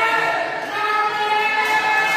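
Court shoes squeaking on a badminton court floor during a rally: a few drawn-out, high squeaks that break off near the middle and start again.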